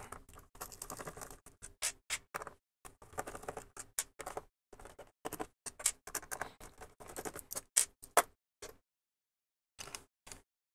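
Light, irregular clicks and scrapes of a precision screwdriver working the screws out of a black plastic enclosure lid, with the plastic case being handled; the clicking stops about 9 seconds in.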